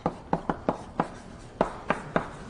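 Chalk writing on a blackboard: a run of about seven sharp, irregularly spaced taps and short strokes as the chalk strikes the board.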